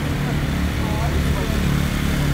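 A sport quad's engine runs at fairly steady revs as the rider holds it in a wheelie on its rear wheels. Voices are faintly audible under it.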